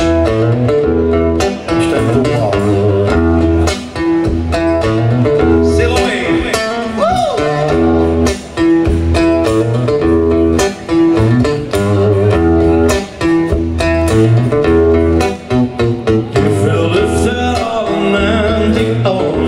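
Live band playing an acoustic rock song through the stage PA: guitar chords over a stepping bass line and a steady beat, with a man singing at times.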